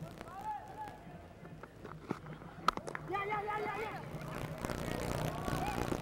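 A cricket bat striking the ball once, a single sharp knock about two and a half seconds in, amid the voices of the crowd.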